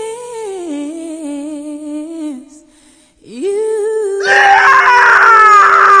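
A man's voice holds a long, high sung note with vibrato that steps down in pitch and breaks off. After a short pause, a held cry rises and turns into a loud, strained scream about four seconds in.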